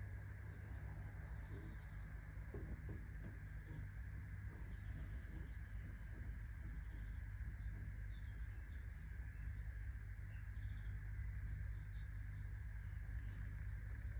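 Faint small-bird chirping: a few short, rapid trills, over a steady low hum.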